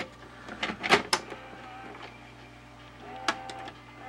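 Panasonic VHS camcorder taking in a videocassette: a few sharp clicks as the tape is pushed in and the cassette door shuts, then the tape-loading motor whirs in two short spells with a click between them.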